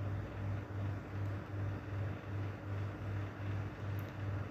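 Caramelised sugar syrup bubbling in a frying pan as it is stirred with a wooden spatula, under a low hum that throbs about two and a half times a second.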